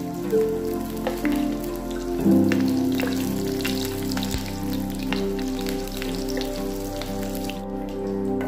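Small whole fish frying in hot oil in a pan, a steady crackle of many small pops and spits, under background music with sustained notes.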